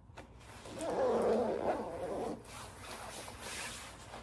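The front zipper of a quilted nylon puffer jacket (Temteq Trillium) being pulled up from hem to collar, one rasping zip of about a second and a half, followed by quieter rustling of the jacket's fabric.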